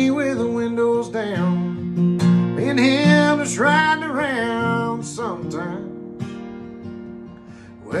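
A man singing a country song to his own strummed acoustic guitar. The voice and playing grow quieter and sparser over the last few seconds.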